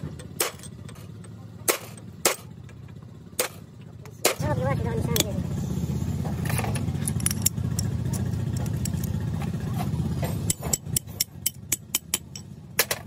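Hammer blows on a steel drift driving a taper roller bearing race in a flanged steel bearing housing: single sharp metal strikes a second or so apart, then a quick run of lighter taps near the end. From about four seconds in to about ten, a steady low mechanical drone, like an engine running, sits under the strikes.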